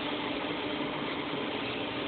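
Steady machinery hum with a faint constant tone under an even background noise.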